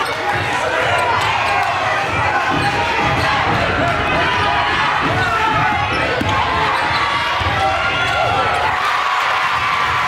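Basketball bouncing on a hardwood gym floor, repeated thuds as it is dribbled, over a steady hubbub of spectators' and players' voices echoing in the gym.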